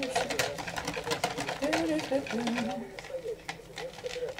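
Whisk beating thin pancake batter in a bowl: rapid, rhythmic clicks of the wires against the bowl's side that thin out about three seconds in.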